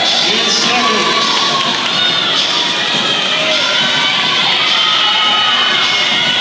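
Crowd of teammates and spectators cheering and yelling on swimmers mid-race: many voices overlapping, steady and loud, in an indoor pool hall.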